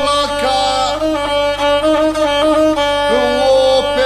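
Gusle, the single-stringed bowed folk fiddle of the Dinaric epic singers, playing a wavering, ornamented melody line.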